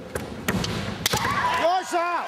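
A women's kendo exchange on a wooden gym floor: three sharp knocks of bamboo shinai and stamping feet in the first second, then drawn-out high shouts (kiai) from the fencers that rise and fall in pitch.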